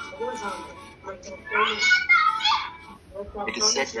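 Background music from a narrated animated video, played through laptop speakers, with a voice speaking briefly about halfway through and again just before the end.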